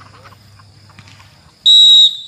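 Referee's whistle blown once in a short, loud, shrill blast near the end, signalling that the penalty kick may be taken.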